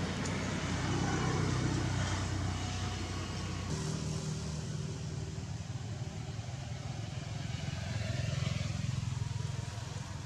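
A motor vehicle engine running steadily, a low hum whose note shifts a little about four seconds in.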